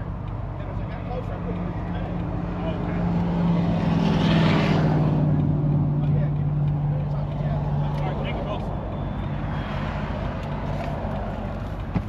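A vehicle passes on the road, growing to its loudest about four to five seconds in, then fading as its pitch slowly drops. A steady low hum runs underneath.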